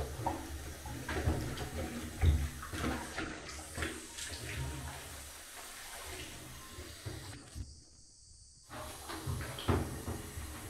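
Child splashing about in a shallow bubble bath, water sloshing irregularly in the tub with uneven bursts and thuds. The sound drops out briefly near the end.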